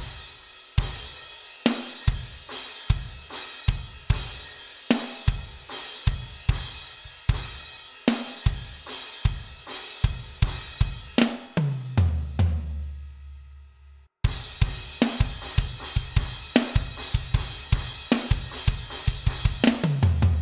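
Electronic drum kit playing a half-time pop-punk groove: steady hi-hat with kick and snare. About halfway through a fill ends the phrase on a low ringing hit with a brief stop, then the groove starts again.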